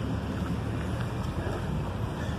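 Steady wind noise on a handheld phone's microphone, a low rumble without breaks.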